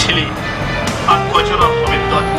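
Background music with long held notes, with a man's voice talking over it about a second in.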